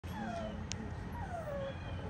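A puppy whining: two high cries, each falling in pitch, about a second apart.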